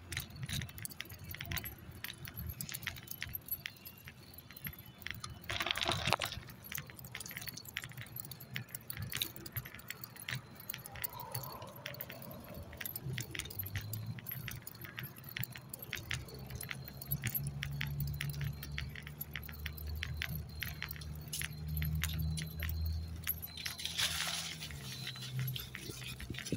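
Small metal pieces jingling with a walker's steps, as a dense run of light clicks. A brief rushing noise comes about six seconds in and again near the end, and a low steady engine hum from road traffic builds through the second half.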